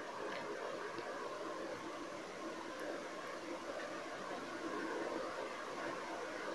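Faint, steady background hiss with one or two light clicks.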